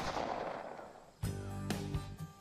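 A single handgun shot right at the start, its report dying away over about a second. Music then comes in, with repeated sharp cracks through it.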